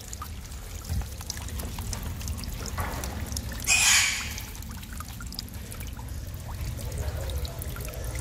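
Rainwater runoff trickling and pouring steadily down an earthen bank into a fish pond. A short, louder noise comes about four seconds in.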